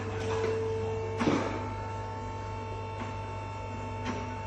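Workshop room tone: a steady low electrical hum with faint sustained tones above it, a small click just after the start, and one sharp knock a little over a second in.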